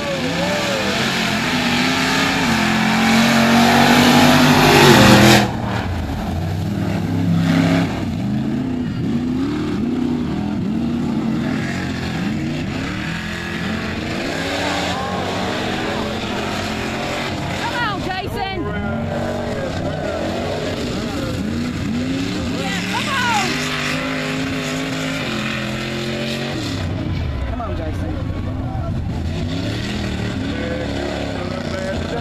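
Mud-racing trucks' engines revving hard as they launch and race through dirt and mud, the pitch climbing and falling with the throttle. It is loudest over the first few seconds and drops sharply about five seconds in, then goes on with repeated rev rises and falls.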